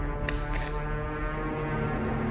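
Tense background music: a deep drone of held low notes.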